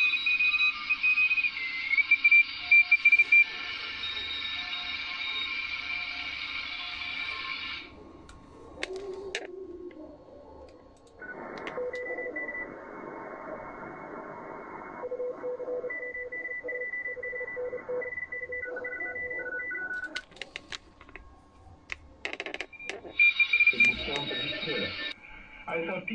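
Shortwave radio reception heard from communications receivers while tuning: band-limited static with steady heterodyne whistles and faint snatches of station audio. About eleven seconds in the sound narrows and turns duller, with tones keyed on and off. A run of clicks comes later, before the wider, whistling static returns near the end.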